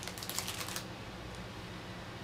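Crinkling and clicking of the craft garland's plastic packaging as it is handled and set down, a short burst in the first second, then room tone with a faint low hum.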